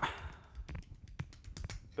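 A few faint, short, scattered clicks and light taps over low room noise; no cymbal is struck.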